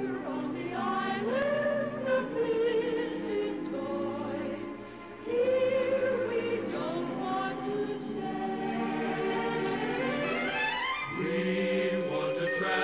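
Christmas medley music: a choir holding long, slowly changing chords over orchestral accompaniment, with a rising run of notes near the end.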